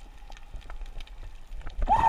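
Underwater camera audio: a low rumble with scattered sharp clicks and crackles, then a short muffled voice-like sound rising and falling in pitch near the end.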